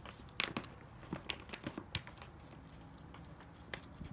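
Bullmastiff puppy eating dry kibble from a hole torn in the food bag: irregular crunches and crackles of kibble and the bag's plastic as she chews.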